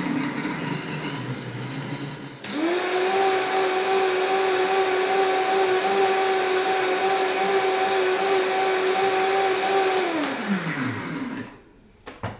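High-speed blender blending nut milk: it runs at a lower speed, then jumps to high speed about two seconds in, a steady high whine. Near the end it is switched off and the motor winds down, its pitch falling away.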